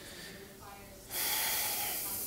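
A man breathing out hard into a close headset microphone, a sudden loud hiss that starts about a second in and lasts about a second and a half, over faint distant speech.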